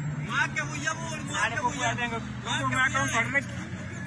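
Voices of people talking and calling out, fairly high-pitched, over a steady low hum.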